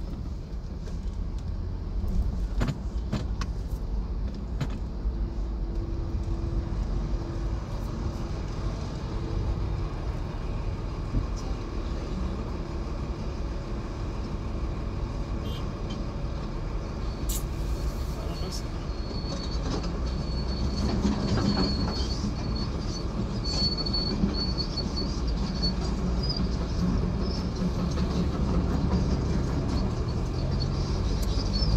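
Slow road traffic and nearby engines heard from inside a car's cabin: a steady low rumble. A thin high whine runs through the second half, and there are a few short clicks early on.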